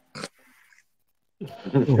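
Men's voices on a podcast call: one short vocal sound right at the start, a pause of about a second, then a man speaking and laughing.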